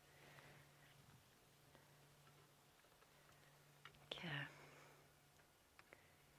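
Near silence with a faint steady low hum and a few faint ticks; about four seconds in, a brief soft murmur of a man's voice.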